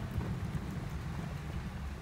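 Heavy rain falling on a vehicle's roof and windows during a thunderstorm, heard from inside the cabin as a steady rushing noise.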